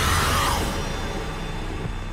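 Dark film-trailer score with a heavy low bass and a falling swish in the first half second, after which the music thins out and drops a little in level.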